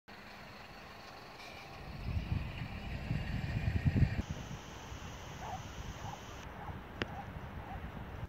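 Wind buffeting the microphone in irregular low gusts, strongest about two to four seconds in, then easing to a steadier outdoor hiss, with one sharp click near the end.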